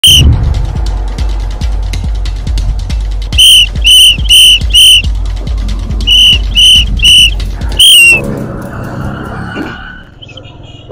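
A shrill whistle blown in short, evenly spaced blasts (four, then three, then a last one that falls in pitch) over a music track with a heavy bass beat. The music stops a little before the end, leaving quieter background noise.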